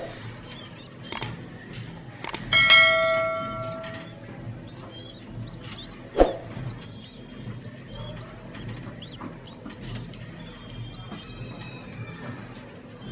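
A bell chime sound effect rings once about two and a half seconds in and fades over about a second and a half, with a sharp click about six seconds in. Faint, quick, high chirps run throughout, the begging peeps of pigeon squabs in the nest.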